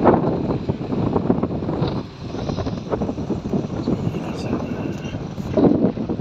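Wind buffeting the microphone of a moving vehicle, with rumbling road and engine noise beneath, loud and constantly fluctuating.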